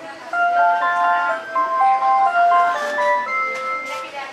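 Hello Kitty 'Kitty Wishes' fortune machine playing a short, tinkling electronic chime tune of single stepping notes, the tune that goes with the message it gives out. The tune starts just after the opening and stops near the end.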